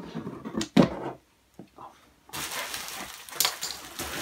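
Plastic packaging wrap rustling and crinkling as hands pull it out of a cardboard box. It starts abruptly about halfway in, with a few sharper crackles.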